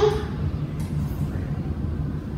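A steady low hum of room noise, even and unchanging.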